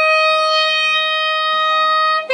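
A saxophone holding one long, high note, steady in pitch and loudness.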